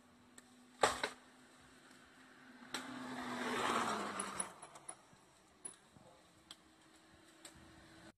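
A vehicle passing: a swell of road noise that rises and falls over about two seconds, with a low hum that drops in pitch as it goes by. A couple of sharp knocks come about a second in.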